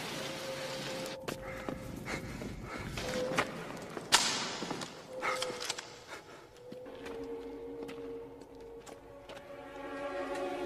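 Film soundtrack: a low held music note with scattered clicks and a sharp crack about four seconds in.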